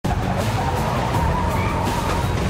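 Busy city street traffic, with car engines running, mixed with background music.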